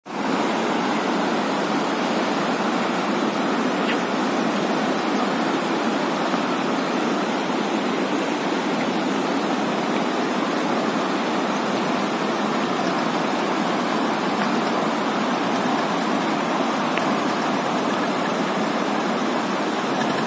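Steady rush of a fast glacial meltwater stream running over rocks.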